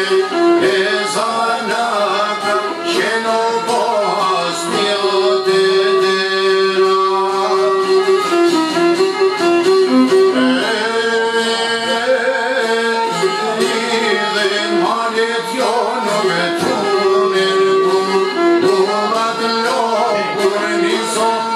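Live Albanian folk music: a plucked çifteli and a violin playing long held notes, with a man singing.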